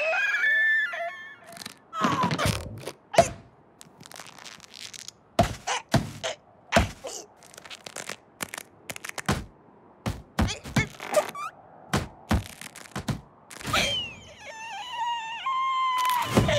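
Cartoon sound effects: a falling whistle, then a long, irregular series of sharp knocks and thunks, with sliding whistle-like tones near the end.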